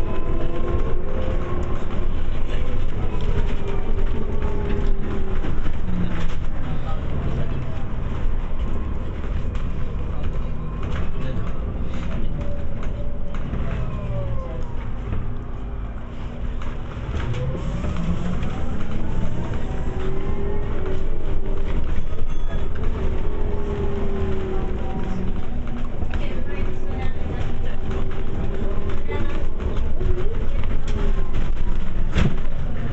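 Inside a moving city bus: engine and drivetrain running over road rumble, with a whine that falls in pitch as the bus slows around the middle and rises again as it picks up speed.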